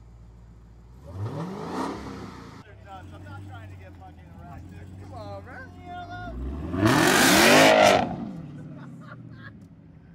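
Dodge Challenger Hemi V8 revved in short blips: one rev about a second in that cuts off abruptly, then a louder rev around seven seconds in, each rising and falling in pitch. The engine idles with a low hum between the revs.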